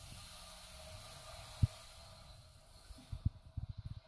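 Faint steady hiss with short dull thumps: one about a second and a half in, then a quick run of them near the end. This is typical handling noise on a handheld camera's microphone.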